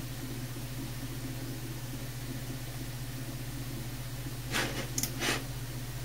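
Steady low hum and hiss from a running desktop computer, with a few short scuffing noises about four and a half to five and a half seconds in.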